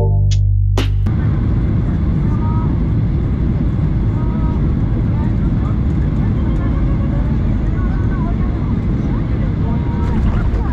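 Music cuts off about a second in. After that, the steady cabin roar of a Boeing 737-800 flying low over the runway just before touchdown: engine and airflow noise, strongest in the low range.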